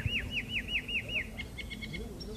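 Blackbird (Turdus merula) singing: a run of repeated down-slurred whistled notes, about five a second, breaking into a faster stuttering twitter about a second and a half in.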